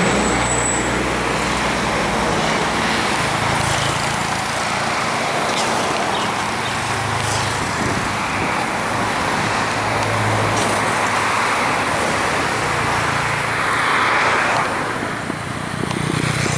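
Road traffic noise: a steady wash of passing vehicles, with low engine hum swelling and fading several times.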